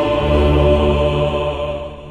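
Choir holding the final chord of a choral anthem over low sustained notes, fading from about a second in.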